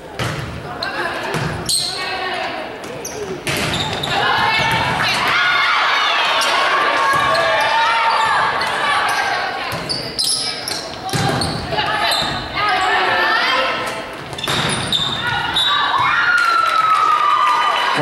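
Volleyball rally in an echoing gymnasium: several sharp smacks of the ball being served, passed and hit, over continual shouting and calling from players and spectators.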